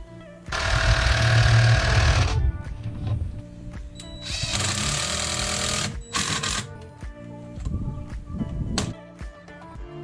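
Cordless drill/driver driving screws into timber in bursts: a long run of about two seconds starting half a second in, another of about a second and a half, then shorter blips. Background music plays underneath.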